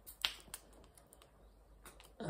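Wet mouth smacks of lips and tongue on an avocado's skin: a sharp click about a quarter second in, a smaller one soon after, and a faint one near the end.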